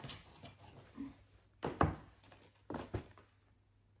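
Rustling and knocking of cardboard packaging and clothes being handled, with two louder short bursts about two and three seconds in, then quiet.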